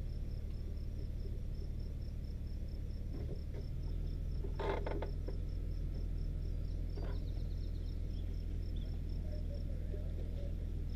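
Nissan Xterra engine idling with a steady low hum; its note shifts slightly about four seconds in. A faint high chirp repeats about four times a second throughout, and there are two brief rattles or clicks about halfway through and near seven seconds.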